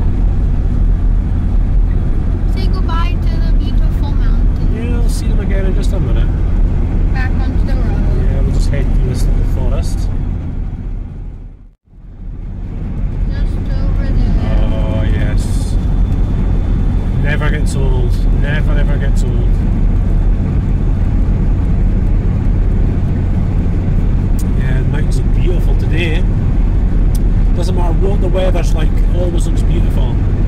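Land Rover Discovery 2 driving at road speed, heard from inside the cab: a steady low engine and tyre drone with road noise. About twelve seconds in, the sound fades out to near silence for a moment and comes back in.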